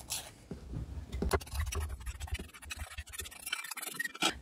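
A small plastic spoon scraping and tapping against the inside of a metal mixing bowl as powdered sauce mix is pushed out into a canning funnel: a quiet run of irregular light scrapes and clicks.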